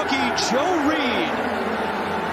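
A male TV play-by-play commentator speaking over steady background noise.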